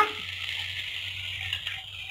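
Onion-tomato masala sizzling steadily in a hot kadai; about a second and a half in, a tumbler of water is poured in from a steel bowl.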